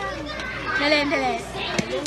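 Voices talking and laughing, with one short clink of ceramic plates near the end as an empty sushi plate is handled at the table.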